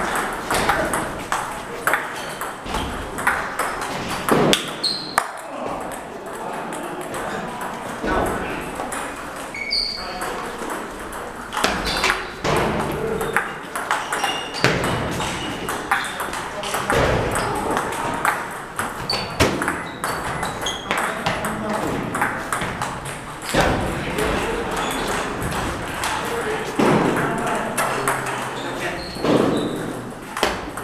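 Table tennis balls clicking again and again off paddles and tables during rallies, with the knocks coming from several tables at once in a large, echoing hall. Background voices murmur underneath.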